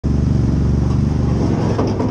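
A vehicle engine running steadily at a low, even pitch with a fast regular pulse, fading a little near the end.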